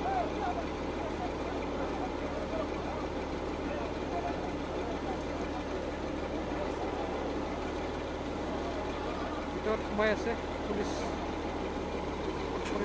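A heavy engine running steadily, typical of the crane truck lifting the overturned vehicle, under a crowd's scattered voices, with a short louder sound about ten seconds in.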